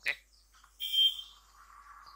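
A short electronic beep with a steady high tone, about a second in, lasting under half a second, with a faint trailing tone after it.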